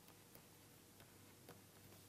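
Near silence with a low hum and a few faint ticks of a stylus writing on a digital tablet.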